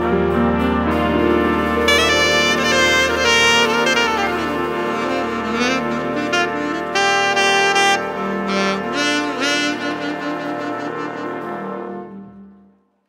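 A big band's brass and saxophone sections playing a closing passage: full held chords over a sustained low note, with melodic runs and rising flourishes on top. The ensemble dies away near the end.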